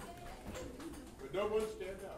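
A man's voice, quiet and brief, with a short held vocal tone about a second and a half in.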